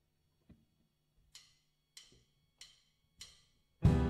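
A drummer's count-in: four evenly spaced sharp clicks, about 0.6 s apart. Right after the fourth click the full band with electric guitars and drums comes in loud near the end.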